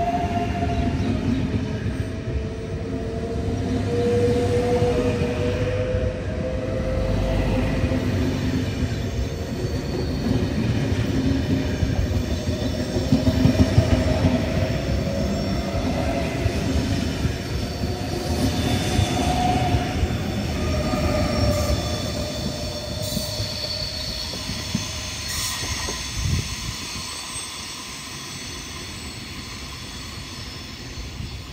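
ETR 700 Frecciarossa high-speed electric train moving slowly along a station platform: continuous running and wheel noise with a whine that wavers in pitch, fading over the last few seconds.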